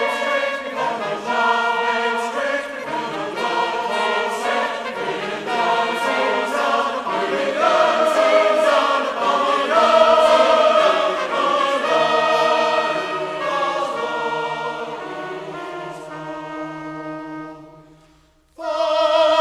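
Choir singing a hymn, the sound easing down over the last few seconds and fading out at the very end.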